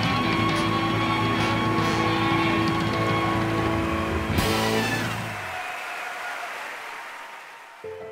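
Live blues band with electric guitar, horns and keyboard holding a closing chord, then ending on a sudden final hit about four and a half seconds in that rings and dies away.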